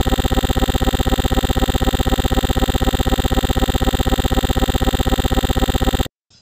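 Stuck sound from a crashed Windows XP virtual machine: a short slice of audio looping over and over as a loud, rapidly stuttering buzz. It cuts off suddenly at the end.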